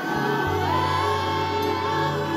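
Live gospel worship music: a choir singing long held notes over a sustained low accompaniment, a new phrase entering about half a second in.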